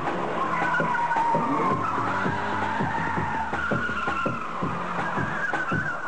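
Car tyres squealing in one long, wavering screech, with scattered short knocks over it.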